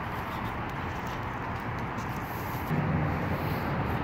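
Steady outdoor background noise, with the low hum of a vehicle engine coming in about three quarters of the way through.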